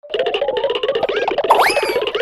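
Upbeat, playful outro music with sliding pitch glides: one slow rising slide at the start and a sharp upward swoop about a second and a half in.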